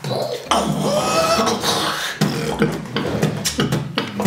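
Human beatboxing: a low hummed bass under sharp mouth-made percussion hits in a quick rhythm, with a short sung rising line about a second in.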